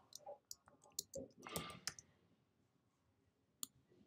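Faint computer keyboard typing and mouse clicks: scattered soft clicks through the first two seconds, then a near-silent pause, then two more clicks near the end.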